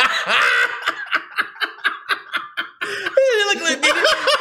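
Men laughing hard: a voiced burst of laughter, then a run of short breathy wheezing pulses at about five a second, and another voiced laugh near the end.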